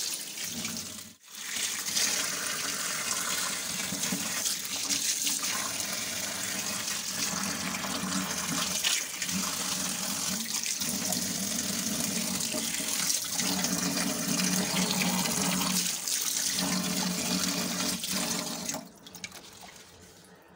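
Tap water running into a stainless steel sink while eggs are rubbed clean under the stream. The splash shifts as the hands move. The flow breaks off briefly about a second in and stops near the end.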